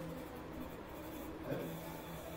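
Faint room noise with a steady low hum in a pause between spoken sentences, and a small soft sound about one and a half seconds in.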